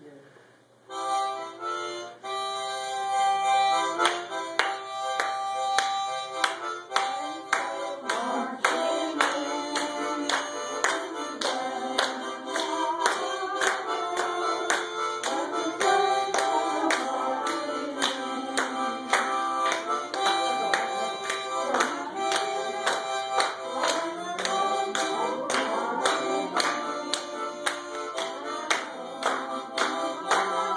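Harmonica playing a tune in full reedy chords, starting about a second in, with a steady beat of hand claps along in time.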